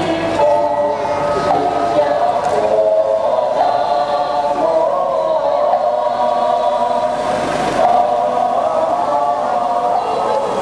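Many voices chanting together in unison, a Buddhist devotional chant sung by the procession, steady and unbroken.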